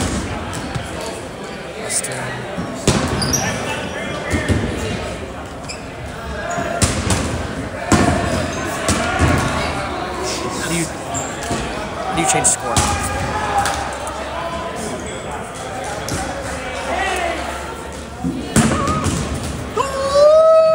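Rubber balls bouncing and thudding on a hardwood gym floor at irregular intervals, over many people's chatter echoing in a large sports hall.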